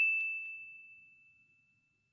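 An edited-in ding sound effect: one bell-like chime on a single high tone that fades away over about a second.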